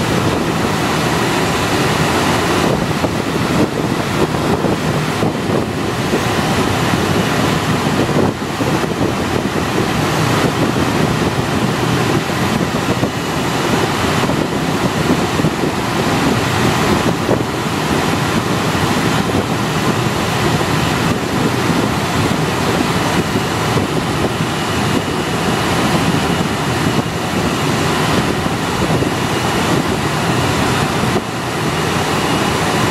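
Steady rush of air around a Schweizer 2-33 training glider's cockpit in engineless flight, heard as loud wind noise on the microphone.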